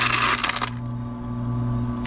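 Ice cubes clattering and clinking in a plastic scoop as it digs through them in a countertop ice maker's basket, stopping under a second in. After that a steady low hum from the running ice maker remains.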